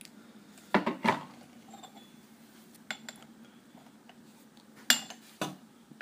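A porcelain gaiwan lid clinking against its bowl as it is set on to cover the tea for its first steep. There are two sharp clinks about a second in, a faint one near the middle, and two more near the end.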